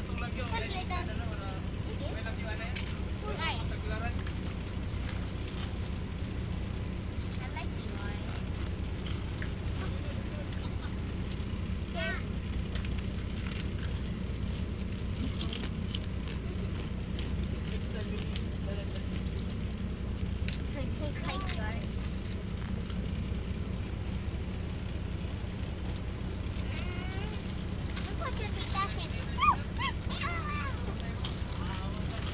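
Bus engine running with a steady low drone, heard from inside the passenger cabin, with faint voices of other passengers now and then.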